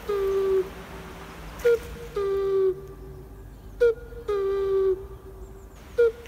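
Cuckoo calling 'ku-kū': a short higher note dropping to a longer lower one, repeated about every two seconds.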